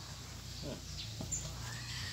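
A faint animal call with a low steady hum underneath.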